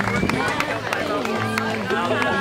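Background music: a song with a singing voice.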